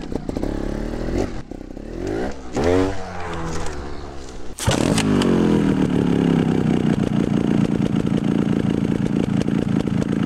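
Trials motorcycle engine revved in several quick throttle blips, its pitch rising and falling. About halfway through the sound changes abruptly to a louder, steady drone that holds to the end.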